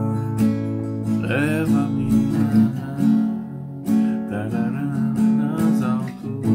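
Dallas cutaway acoustic guitar strummed in a steady rhythm, moving between A major and F-sharp minor chords.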